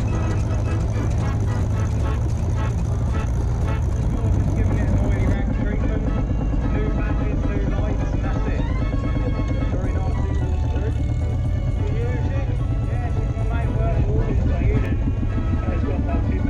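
Vintage tractor engines running with a steady low rumble as the machines drive past, with indistinct voices over the top.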